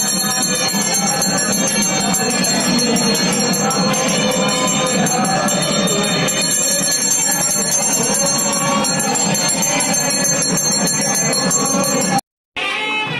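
Temple bells ringing continuously and evenly, with a dense wash of other sound beneath.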